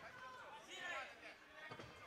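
Faint, distant shouting voices from the arena crowd.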